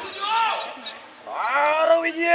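Loud wailing, howling cries from a person's voice: a short cry that rises and falls early, then a second that climbs steeply in pitch and levels off into a held note near the end.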